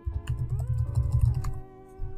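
Typing on a computer keyboard: a quick run of keystrokes that stops about a second and a half in, over background music with sustained tones.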